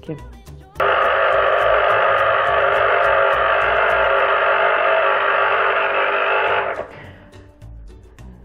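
Electric citrus juicer's motor spinning its reamer cone as an orange half is pressed onto it: a steady hum that starts suddenly about a second in and cuts off near the end.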